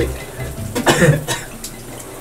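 A shower spraying steadily onto a person, who coughs and splutters briefly about a second in.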